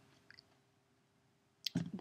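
A pause in a woman's talk: near silence with a faint short click about a third of a second in, then her voice resumes near the end.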